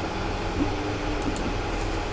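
Steady background hiss and low hum of room noise, with a couple of faint clicks a little past the middle.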